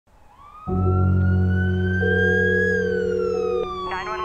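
A siren-like wail gliding slowly up in pitch and then back down, over a low steady drone that starts suddenly under a second in.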